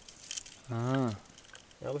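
A man's voice: one drawn-out syllable around the middle and the start of a phrase near the end, with a few faint metallic clicks and jingles at the start.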